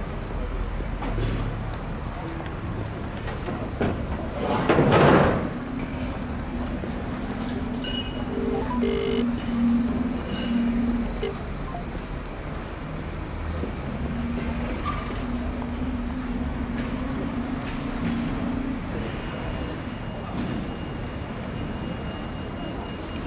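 Town-centre street ambience with a vehicle engine running nearby. There is a loud rush of noise about five seconds in, and a low held tone comes and goes through the middle.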